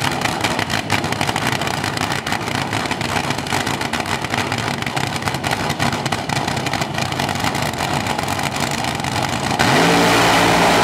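Supercharged nitromethane-burning engine of a front-engine AA/FD top fuel dragster idling loud and uneven on the starting line. About nine and a half seconds in it jumps to full throttle for the launch, the pitch rising sharply.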